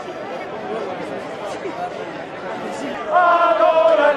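Crowd chatter. About three seconds in, a man's singing voice comes in loud on a long held note, the start of a song.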